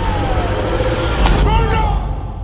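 Loud, rumbling crash of a large sea wave breaking against a stone jetty, with a sharp hit about a second in.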